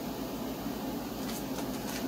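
Steady low mechanical hum, like an appliance or fan running, with a few faint clicks near the end.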